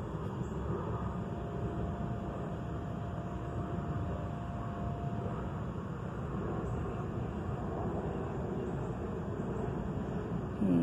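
Steady low background rumble with no distinct events, and a faint steady tone from about a second in until about halfway through.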